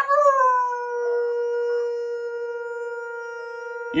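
A long howl on a single steady note, held for almost four seconds after a brief wavering start, breaking off abruptly at the end.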